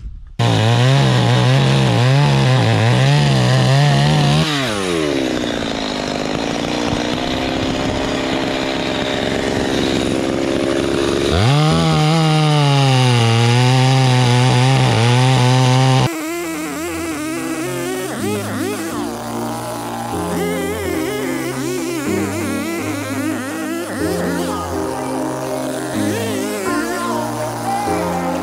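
Small two-stroke chainsaw running hard while cutting through logs. Its pitch drops about four seconds in and climbs back as it revs up again about eleven seconds in. About sixteen seconds in the saw cuts off abruptly and is replaced by background music with a beat.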